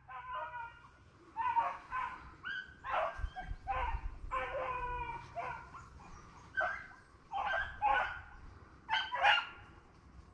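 A pack of rabbit-hunting hounds baying on the trail of a running rabbit. Their short, repeated, overlapping calls come every half second or so, with brief gaps.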